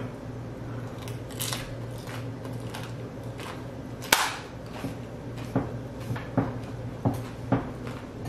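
Chewing on a crisp, deep-fried corn-tortilla taquito: a string of short, sharp crunches, the loudest about four seconds in, over a steady low hum.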